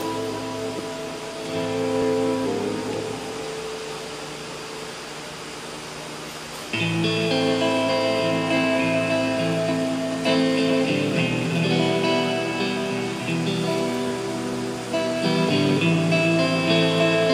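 Amplified guitars playing the instrumental opening of a song. Held chords die down to a quieter stretch, then a louder, fuller run of chords starts suddenly about seven seconds in.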